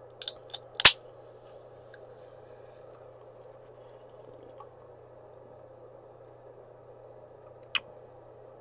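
A sparkling-water can being opened: small clicks as the pull tab is lifted, then a sharp pop about a second in and a brief hiss of escaping carbonation. The rest is quiet room hum, with one more click near the end.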